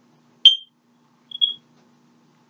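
Two short, high-pitched electronic beeps about a second apart, the second slightly longer, over a faint steady hum.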